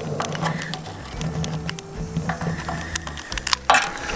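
Background music, with small clicks and crackles from a fire starter and paper catching under split logs in a small steel wood stove's firebox, and a louder knock near the end.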